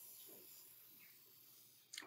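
Near silence, with only the faint soft scratch of a graphite pencil drawing a border line on sketchbook paper.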